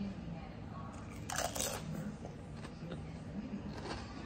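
A crunchy bite into a ridged Ruffles potato chip a little over a second in, lasting about half a second, followed by quieter chewing.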